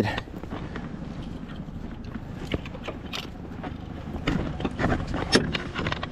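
Light clicks and knocks of gear being handled aboard an aluminum jon boat, over a steady low rumble.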